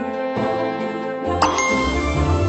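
Online video slot game audio during its Ruby Slippers bonus feature: bright chiming dings over the game's music, with a sharp chime strike about one and a half seconds in that rings on.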